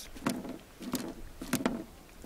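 A few short, sharp knocks and taps at irregular intervals.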